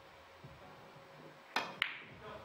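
Opening shot in three-cushion billiards: a sharp click of the cue tip striking the cue ball, then a second crisp click of balls colliding about a quarter second later.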